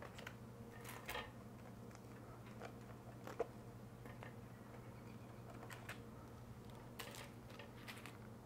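Faint scattered taps and clicks as cooked batter-wrapped sausages are lifted out of a corn dog maker with a slotted spatula and set down on a metal wire cooling rack, with one sharper click about three and a half seconds in, over a low steady hum.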